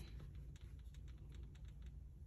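Faint, irregular light clicks and taps as hands smooth and handle a chunky crocheted cowl on a marble countertop, over a low steady background hum.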